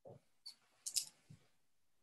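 A few faint, separate clicks and soft knocks, with a sharper double click about a second in.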